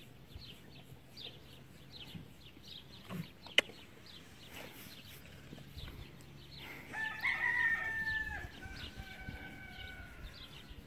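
A rooster crows once, loudly, about seven seconds in, and a second, fainter crow follows. Small birds chirp throughout, and a single sharp click sounds a few seconds in.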